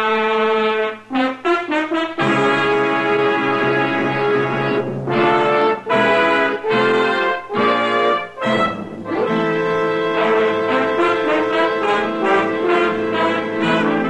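Brass-led orchestral music bridge from a radio drama, the scene-closing cue. It starts with a sudden loud chord and short punched chords, then moves to longer held chords in the second half.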